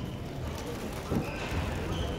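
Sounds of a badminton rally: shoes squeaking on the court mat, with a sharp thump about a second in.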